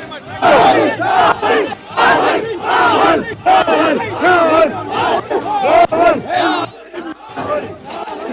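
A crowd of men shouting and cheering together, loud and in repeated surges, with a brief lull about seven seconds in.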